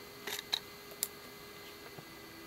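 Handling noises: a short scrape, then two sharp clicks, the second about a second in, as objects are moved at a plastic bucket and a concrete post is lifted.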